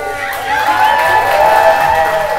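A crowd cheering over background music.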